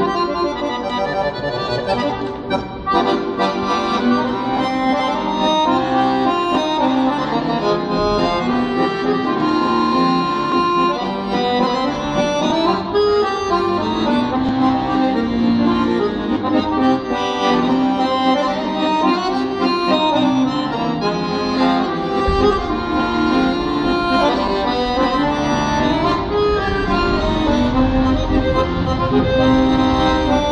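Two piano accordions playing a tune together.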